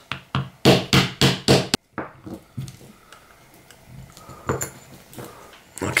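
A quick run of about six sharp knocks, a metal tool striking a stuck gearbox pin in an airsoft pistol's plastic frame to drive it out, followed by faint clicks of handling. The pin is not coming out with this force.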